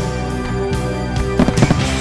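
Display fireworks firing over music: a sharp bang right at the start, then a quick cluster of bangs and cracks about one and a half seconds in as comets launch and shells burst overhead.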